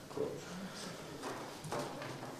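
Low, indistinct voices with a few soft knocks and paper rustles from people at a table.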